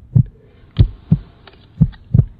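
Heartbeat sound effect: deep double thumps, lub-dub, about once a second.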